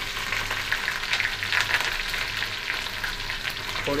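Chopped onion and green chilli frying in hot oil in a wok, with garlic and whole coriander seeds, for a tadka. It makes a steady sizzling hiss dotted with small crackles.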